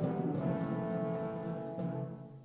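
Chamber orchestra playing modern classical music: sustained wind and string chords with a long held high note, over timpani strokes.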